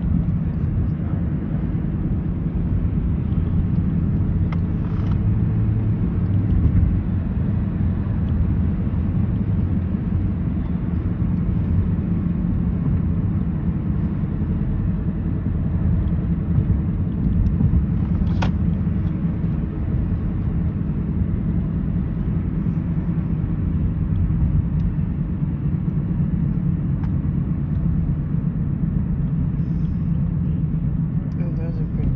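Steady low road and engine rumble heard inside a moving car's cabin, with a single short click a little past halfway.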